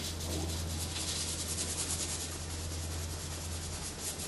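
Brush scrubbing oil paint onto canvas in quick, repeated strokes, over a steady low hum.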